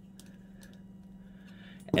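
Faint, scattered clicks of a socket and extension on the hex knob of a small steel hose clamp vise as it is clamped down and the tool taken off, over a faint steady hum.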